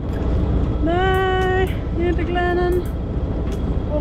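A sailboat's inboard diesel engine running under way, a steady low rumble with a rushing noise over it. A woman's voice sounds two drawn-out, held notes about one and two seconds in.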